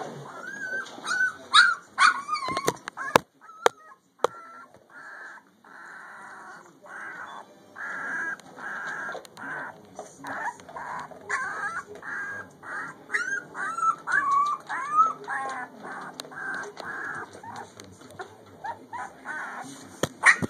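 Three-week-old puppies whimpering and squealing in short, high-pitched cries that bend up and down in pitch, with a run of regular cries about twice a second through the middle. A few sharp knocks sound about three seconds in.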